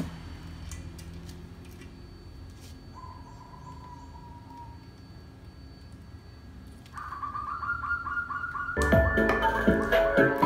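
Music played through a bare Ashley woofer cuts off suddenly at the start as the cable is unplugged, leaving several seconds of quiet room tone with a faint bird chirp. About seven seconds in a patterned tone begins, and loud music starts again through the other woofer near the end.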